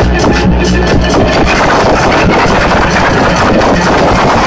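Electronic dance music played loud over a club sound system and picked up by a handheld camera's microphone: a dense, unbroken wall of sound with heavy bass.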